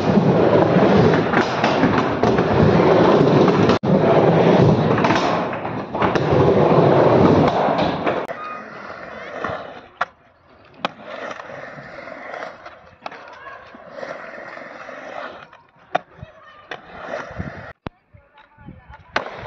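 Skateboard wheels rolling loudly close up for about eight seconds. After that, fainter skateboarding on concrete, with several sharp clacks of the board and wheels landing and hitting obstacles.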